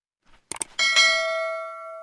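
Subscribe-button sound effect: two quick clicks, then a bright bell ding that rings out and fades over about a second and a half.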